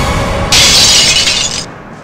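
Glass-shattering sound effect: a sudden loud crash about half a second in that lasts about a second and dies away, over background music that fades out.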